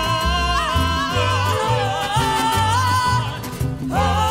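Mariachi band playing live: long, wavering melody notes held over low bass notes that change in a steady rhythm. The music drops briefly near the end, then a new phrase comes in.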